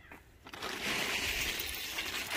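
Plastic camouflage tarp rustling as it is unfolded and lifted, starting about half a second in.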